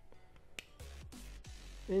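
A small sharp click about half a second in, then soft handling rubs and knocks from fingers working a toy missile onto the side peg of an action figure's gun.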